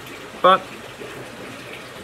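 Steady rush of circulating water from a large aquarium's filtration, under one short spoken word.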